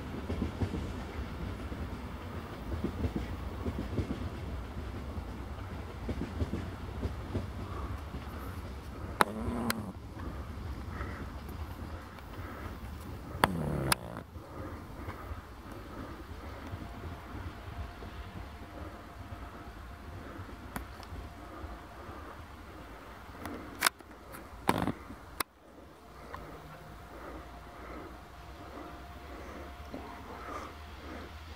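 Passenger train carriages rolling along the track and moving away, a rumble of wheels on rails that slowly fades. A few brief sharp clicks stand out about a third of the way in, around the middle, and twice near the end.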